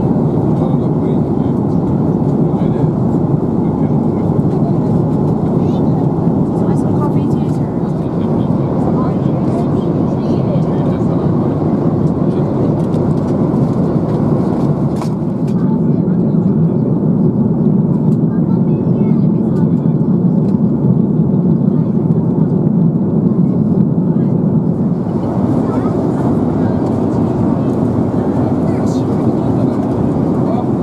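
Steady cabin roar of an Airbus A330-300 airliner in flight, the engine and airflow noise heard from inside the passenger cabin. It turns deeper about halfway through and brighter again near the end.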